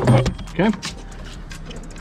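A man's voice says "okay", followed by low, even background with no distinct sound event.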